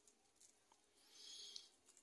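Near silence, with one faint, high-pitched call about a second in, lasting about half a second.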